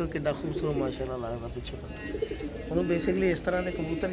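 Domestic pigeons cooing, a low, wavering call repeated several times with short pauses.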